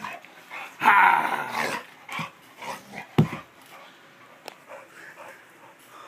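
Bulldog growling in play: one loud growl about a second in, then a few shorter growls and grunts that die away after about four seconds.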